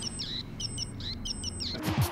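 Ariel, a solar-powered bird brooch built on a custom circuit board, chirping through its small buzzer in quick repeated clusters of high electronic tweets and short falling whistles. The chirping is set off by light falling on its solar panel.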